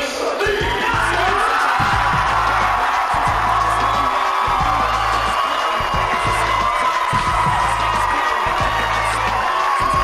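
Background music with a steady deep beat and long held tones. Crowd cheering sits faintly beneath it.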